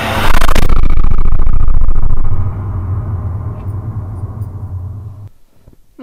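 TV programme title sting: a rising whoosh into a loud, deep rumbling boom that holds for about two seconds, then fades away over the next three.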